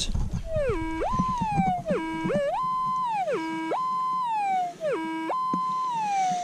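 Minelab GPX 4500 pulse-induction metal detector sounding off on a target with each sweep of the coil: a tone that drops low, jumps to a high pitch and slides back down, about four times, pretty doggone loud. The signal is solid and not breaking, which the hunter takes for a bullet.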